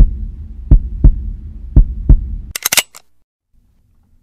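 Heartbeat sound effect: low paired lub-dub thuds about once a second over a low hum, three beats in all. A short, sharp crackling burst follows about two and a half seconds in, and the sound then cuts to silence.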